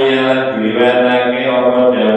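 A man's voice chanting Arabic text from a kitab kuning in one slow, unbroken melodic line of long-held notes.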